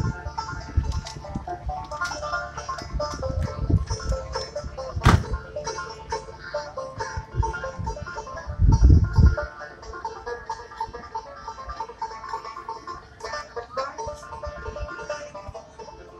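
Banjo picked by a street busker, a steady run of quick plucked notes. Low rumbles on the microphone come and go, loudest about nine seconds in.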